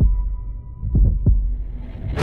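A slow heartbeat sound effect in a horror-trailer soundtrack: deep double thumps, one pair about a second in, over a high steady tone that fades out early. A hiss swells near the end.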